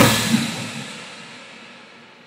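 Marching drumline's closing hit on snares, tenor drums and bass drums ringing out and fading away over about two seconds, with one light tap just after the hit.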